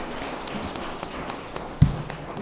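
Audience applauding: a steady patter of many hands clapping, with one loud low thump near the end.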